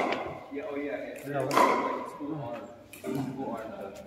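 Indistinct talking in a gym hall, with a brief rustling burst about one and a half seconds in.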